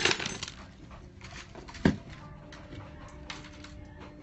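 Clatter and rubbing of a phone being handled against a jacket, with one sharp knock just before two seconds in.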